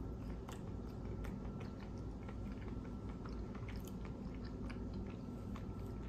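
Close-miked chewing of a mouthful of bacon, egg and cheese sandwich: faint, scattered wet mouth clicks.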